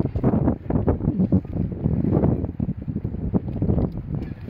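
Wind buffeting the microphone, an uneven low rumble that rises and falls in quick gusts.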